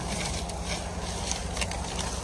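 Foam packing strips and a cardboard box rustling and crinkling as they are handled, with faint small crackles over a steady low hum.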